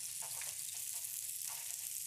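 Steady sizzle of meat frying in fat in a pan, with a couple of faint knocks of a knife on a wooden cutting board.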